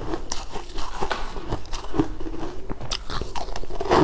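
Crunching and chewing on a frozen sweet ice ball, with irregular sharp cracks as the ice breaks between the teeth.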